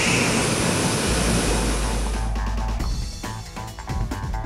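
Chickpea grinder running with a steady rushing machine noise and a low hum. About two seconds in it gives way to background music with plucked guitar.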